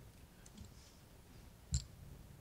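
Quiet room tone with faint small sounds, then a single short, sharp click near the end.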